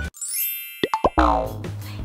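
Cartoonish transition sound effect: a high, shimmering sweep falling in pitch, then a few quick plopping pops about a second in, after which the background music comes back with a steady low beat.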